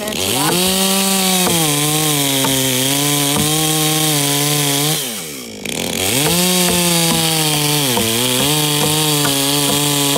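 Gas chainsaw revving to full throttle and cutting into a log, its pitch sagging slightly as the chain bites. It drops off to idle a little past halfway, then revs back up a second later and cuts on. A few light knocks sound under the engine.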